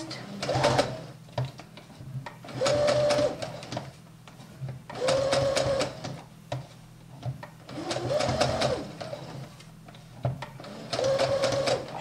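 Small electric home sewing machine stitching knit fabric in five short runs of about a second each, with pauses between them.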